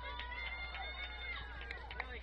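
A person's long, high-pitched drawn-out shout, held at a steady pitch for about a second and a half before trailing down, followed by a couple of sharp clicks near the end.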